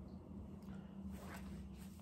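Quiet room tone with a low steady hum, and a few faint, soft rustles and knocks from objects being handled and set down.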